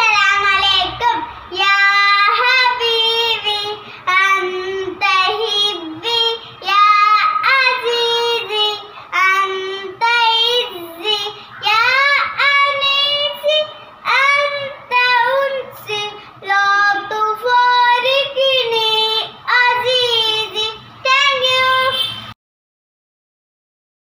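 A young girl singing an Arabic action song in phrases with short pauses between them, with no accompaniment.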